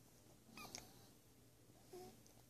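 Near silence, broken by a faint, short, high squeak from a sleeping baby about half a second in and another small one near the end.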